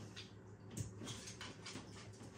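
Faint scattered clicks and light rustling as a dog takes a piece of cheese sausage from a hand, over a low steady hum.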